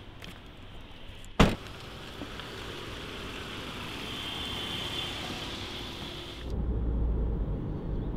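A car tailgate slammed shut once, about a second and a half in. Then a Mitsubishi SUV drives up, its engine and tyre noise slowly growing louder. Near the end this gives way suddenly to a low, steady road rumble.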